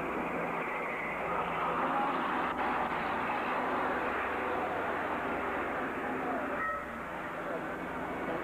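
Indistinct voices over a steady noisy background, with a short steady tone about two-thirds of the way through.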